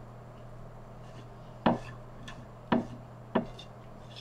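Three short, dull knocks about a second apart, over a steady low hum.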